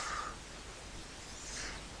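Faint room tone: a low steady hum and soft hiss from the microphone, with no distinct sound event.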